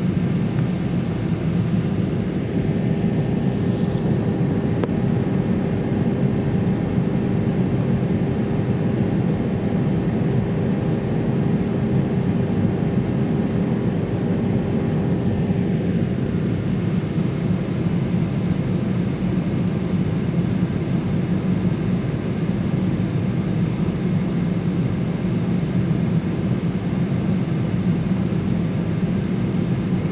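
Steady cabin hum inside a parked Airbus A321-200 before pushback, the ventilation and onboard power running, with a thin steady whine through it.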